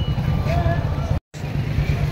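A steady, loud low rumble, engine-like, with a faint voice briefly over it; the sound cuts out for an instant a little past the middle.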